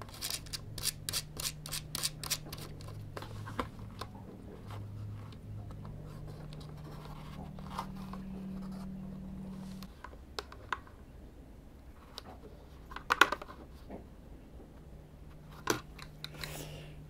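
Small sharp clicks and taps of a ship's clock being reassembled by hand, its quartz movement and small fittings worked against the dial: a quick run of clicks in the first few seconds, then scattered ones with a louder cluster near the end. A faint steady low hum underneath.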